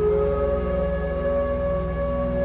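Meditation background music: a steady low drone with one long held note sustained over it.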